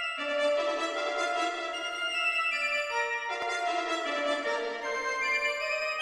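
Music: slow, sustained organ-like chords in a symphonic piece, moving to a new chord a few times.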